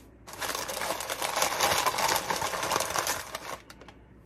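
Sheets of newspaper packing crumpling and crinkling by hand as a ceramic creamer is unwrapped, a dense crackle that starts a moment in and stops shortly before the end.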